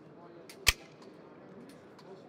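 Cutaway Glock 17 pistol being handled, its slide worked: one sharp metallic click about two thirds of a second in, with a couple of fainter clicks around it, over a low murmur of voices.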